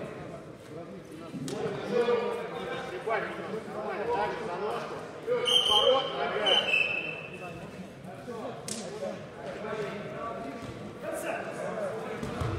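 Indistinct voices of coaches and spectators calling out in a large echoing sports hall, with a few sharp thuds from the wrestling on the mat.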